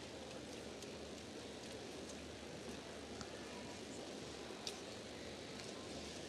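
Low, steady background noise of an ice-rink arena hall, with a few faint clicks, one more distinct about three-quarters of the way through.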